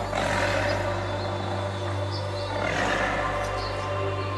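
Intro of a progressive trance track: a sustained synth pad over a steady bass drone, with two rough, noisy swells laid on top, one right at the start and another a little over halfway in.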